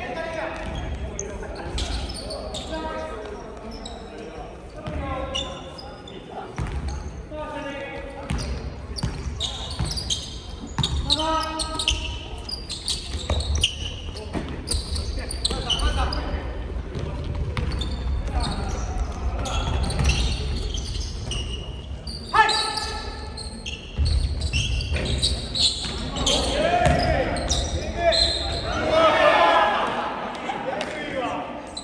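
Basketball dribbled and bouncing on a hardwood gym floor during live play, with players calling out to each other, all echoing in a large hall.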